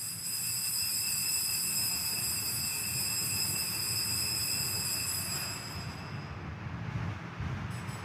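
Altar bell struck at the elevation of the chalice after the consecration, ringing out with several high steady tones that fade away over about six seconds, over a low room rumble.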